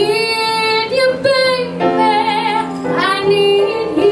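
A woman belting a song in a series of long held notes, one with a wavering vibrato about halfway through, with live piano accompaniment.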